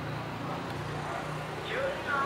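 Steady low hum of road traffic.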